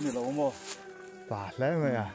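A man's voice talking, pausing in the middle, then a quick, fast-wavering vocal sound near the end.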